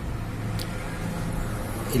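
A steady low machine hum with a few held low tones, and a faint click about half a second in.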